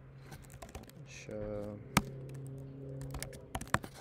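Typing on a computer keyboard: a run of key clicks with two sharper, louder keystrokes, one about two seconds in and one near the end.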